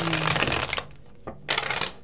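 A tarot deck being riffle-shuffled by hand: a fluttering riffle lasting about a second, then a second, shorter riffle about halfway through.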